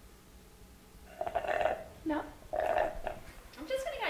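Two short, rough, voice-like sounds about a second apart, coming after a quiet first second, with a brief vocal sound near the end.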